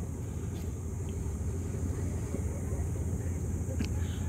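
Steady low rumble of distant engines, with a faint click near the end.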